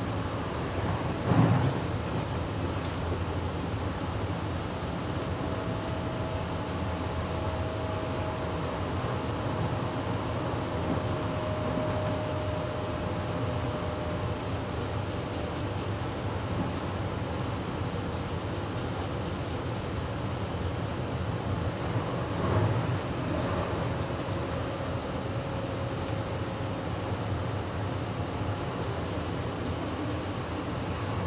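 Steady running noise of a double-deck electric suburban train (Sydney Trains H set) heard from inside the carriage: wheels on rail and body rumble. Two short, louder thumps come about a second in and again after about twenty-two seconds, and a faint high whine rises out of the noise for several seconds twice.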